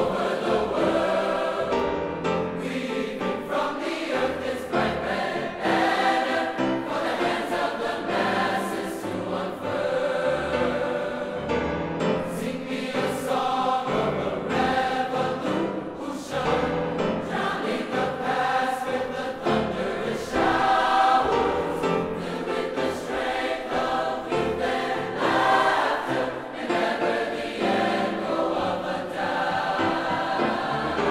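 A large mixed high school choir singing in full voice, continuously throughout.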